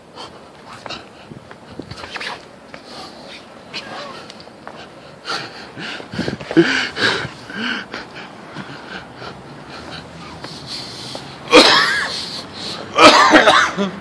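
A person coughing hard: two loud, rough coughing fits about a second apart near the end, after smaller bursts about halfway through.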